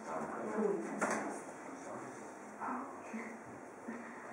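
Low murmur of several people talking quietly among themselves in a small room, with no single voice standing out.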